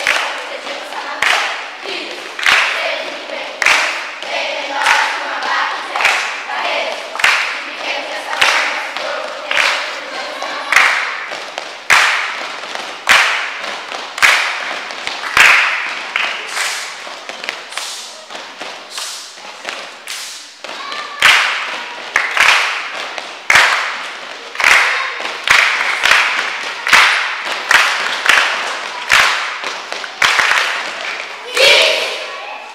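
A group of children chanting or singing together while clapping their hands in a steady rhythm, a strong clap about every second with lighter claps or stamps between.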